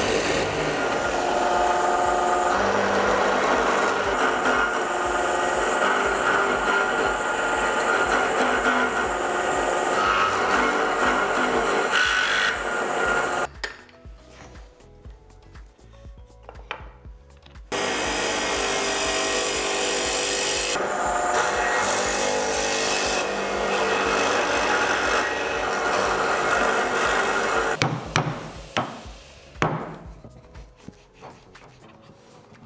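Horizontal slot mortiser's spinning spiral bit cutting mortises in solid wood, loud and continuous, dropping away for about four seconds midway and then cutting again. Near the end come a few sharp knocks of a wooden mallet.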